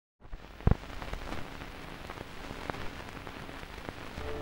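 Vinyl record surface noise: a steady crackling hiss with scattered small clicks, and a louder thump about two-thirds of a second in, like a stylus dropping onto the record.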